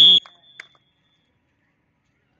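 A single short, high-pitched whistle blast at the very start, its tone fading out within about half a second; after that, near silence.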